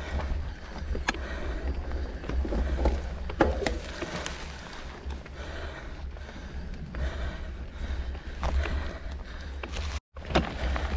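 Mountain bike ride noise on a gravel forest trail: a steady low rumble of wind on the microphone, with tyres on loose stones and scattered sharp clicks and knocks from the bikes.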